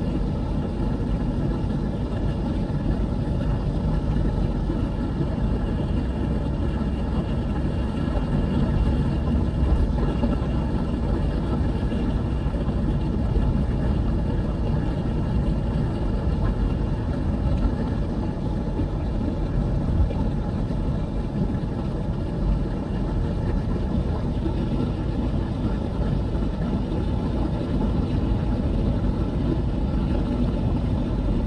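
Steady engine and tyre noise heard inside a moving car's cabin, a continuous low rumble with no sudden events.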